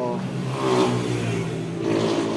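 A motor vehicle engine running steadily, a low drone with a level hum.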